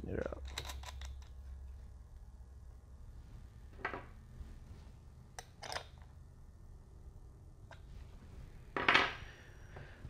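Wire cutters snipping and battery cable being handled: a few scattered sharp clicks, with a louder short rasp about nine seconds in, over a low steady hum.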